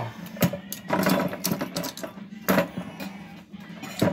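Clicks and knocks of a dog-proof raccoon trap's metal and plastic parts being handled and moved, a few short, separate strikes spread over a few seconds.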